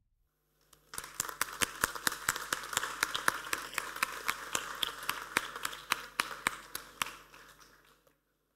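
Audience applauding, with many sharp individual claps; it starts about a second in and dies away near the end.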